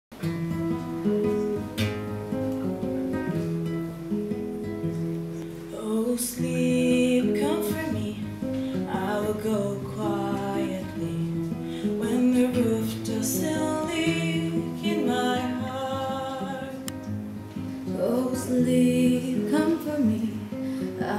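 Classical guitar played as accompaniment, with a young woman singing over it; her voice comes in about six seconds in.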